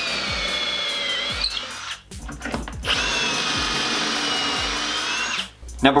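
An 18-volt cordless drill boring pocket holes into a 2x4 through a pocket-hole jig. It makes two steady runs of high whine of about two and a half seconds each, with a short pause between them.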